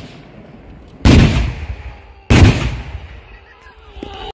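Two loud explosions a little over a second apart, each a sudden blast with a rumbling tail that dies away over about a second.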